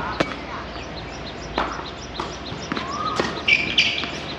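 Tennis rally on a hard court: sharp knocks of the ball off the racquet strings and the court, spaced about a second apart, with the loudest just after the start and a cluster near the end. A brief squeak comes late on, and small bird chirps run underneath.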